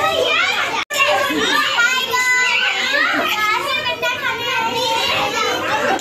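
Several young children chattering and calling out over one another in high voices, with a brief break in the sound just under a second in.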